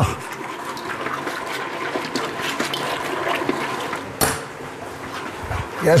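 Commercial planetary mixer running, its beater churning a thick batch of hummus paste and tahini in a steel bowl with a steady, wet churning noise. There is one sharp click about four seconds in.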